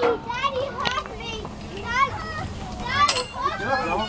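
Children's voices, several at a time, chattering and calling out while they play.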